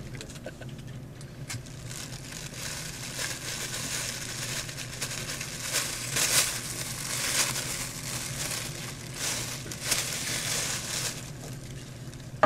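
Thin plastic bag crinkling and rustling as it is handled and squeezed close to the microphone, in irregular bursts.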